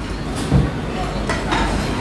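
Restaurant background noise: a steady low hum with faint clinks and a single dull thump about half a second in.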